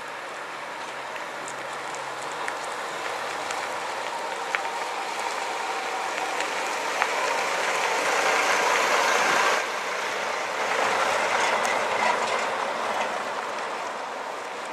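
A vintage coach driving past on a dusty gravel yard: engine running and tyres crunching over loose stones, building up to its loudest as it passes close about eight to nine seconds in, then falling away suddenly and swelling again as it pulls off, with a few sharp clicks of stones.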